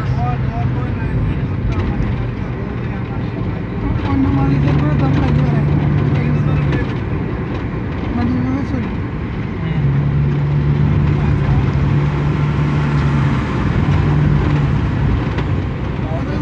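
Microbus engine and road noise heard from inside the cabin while driving at speed: a steady rumble, with a low engine drone that swells for a few seconds at a time.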